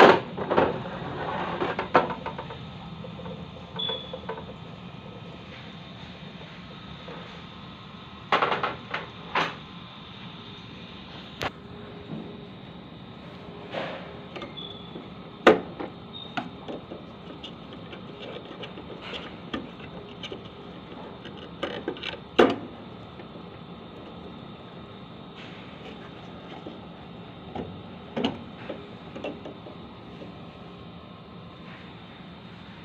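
Plastic parts inside a coffee vending machine being handled and pulled out: scattered sharp clicks and knocks, the loudest bunched near the start and a few single ones later, over a steady background hum.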